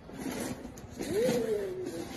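Plastic wheels of a child's ride-on toy car rolling and scraping over a tile floor. About a second in, a drawn-out tone rises and then slowly falls.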